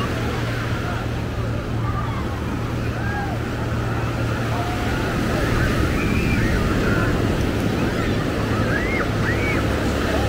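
Ocean surf breaking and washing up the sand in a steady rush, under the chatter of beachgoers, with a few voices calling out in the second half.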